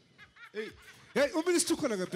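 A person's voice, short talk mixed with laughter, getting louder a little over halfway through.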